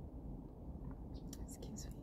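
Faint, steady low hum of a quiet car cabin, with soft breathing and a few small mouth clicks in the second half.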